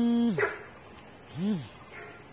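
Frog calling: a long low note that rises, holds level and falls just after the start, then a short rising-and-falling note about a second and a half in. A steady high insect hiss runs underneath.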